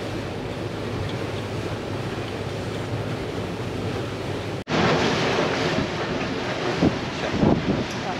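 Wind buffeting the microphone and water rushing past the hull of a boat under way, a steady rush with a sharp break about halfway through, after which it is louder and gustier.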